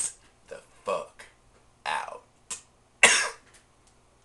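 A man making several short throaty sounds without words, the loudest and longest about three seconds in.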